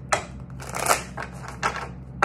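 A tarot deck being shuffled by hand, the cards sliding and slapping against each other in a quick series of short strokes.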